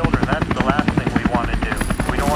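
A fast, even chopping sound at about ten beats a second, over a low rumble, with a voice talking over it; this is intro sound design.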